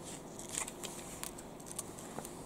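Paper pages of a caravan handbook being flipped and turned by hand: a run of soft rustles and crinkles, with one louder rustle about half a second in.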